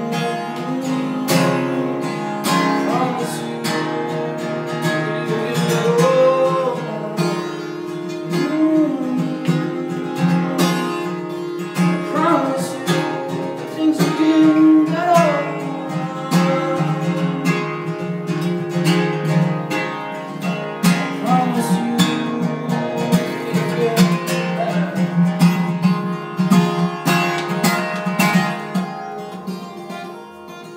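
Acoustic song music: an acoustic guitar strummed and plucked under a held, sliding melody line.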